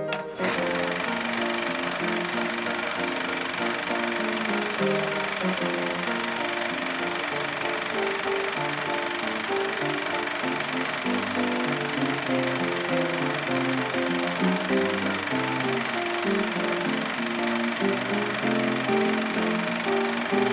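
Background music of low melodic notes over a steady hissing, clattering noise layer that starts abruptly and holds at an even level.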